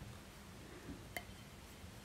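Quiet room tone with a single small, sharp click a little over a second in.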